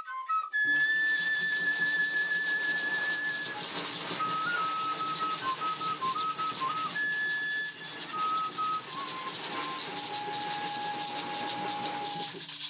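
Chirimía folk music: a transverse cane flute plays a melody of long held notes over drums and steady rattling hand percussion, including totumo-gourd maracas.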